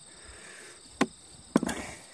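Hand tapping on the rind of a striped watermelon: one sharp tap about a second in, then two or three more in quick succession, the tap test for ripeness.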